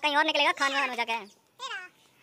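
A person's voice talking for about a second, then one short high call that falls in pitch near the end.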